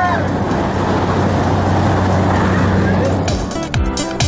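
Propeller jump plane's engine heard inside the cabin: a loud steady rushing noise over a low hum. About three seconds in, electronic dance music with a thumping beat comes in.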